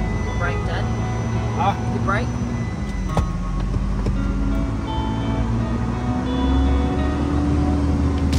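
Isuzu NPS 4x4 truck's diesel engine running steadily, heard from inside the cab while driving, with background music laid over it.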